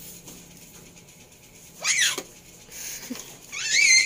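A baby's high-pitched squeals, twice: a short falling squeal about two seconds in and a rising one near the end.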